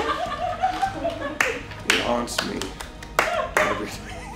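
A few scattered, irregular hand claps with soft laughter and chuckling among them.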